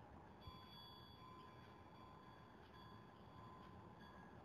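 Near silence: room tone with faint, thin steady high tones and a soft click about half a second in.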